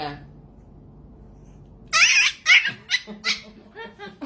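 Fluffy puppy crying out in a run of loud, high-pitched yelps and whimpers while its fur is combed, starting about two seconds in; the dramatic crying is a protest at being groomed.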